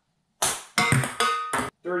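Ping pong ball bouncing on a hardwood floor and striking hard objects: several quick, sharp pings over about a second.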